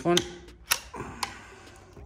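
A mains plug being pulled out of a plug-in digital thermostat socket: two sharp clicks about half a second apart, then a fainter tick.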